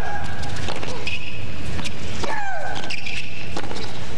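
Tennis rally on a hard court: sharp racket-on-ball hits, with a woman player's long shriek falling in pitch on her shots, twice about two seconds apart. Shorter high squeals come in between.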